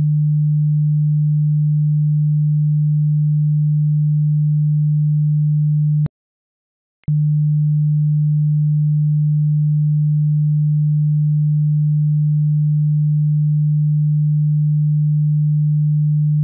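A steady 150 Hz sine-wave test tone, a single low pure pitch. It cuts off with a click about six seconds in, leaves about a second of silence, then resumes with another click.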